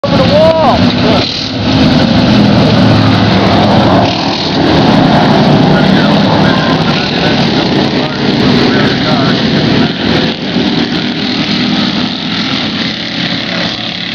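A stock-style race car's engine running loud as the car rolls slowly by, with voices over it.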